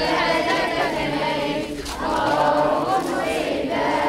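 A crowd of men and children chanting a prayer together in unison, many voices overlapping, in two phrases with a short break about halfway.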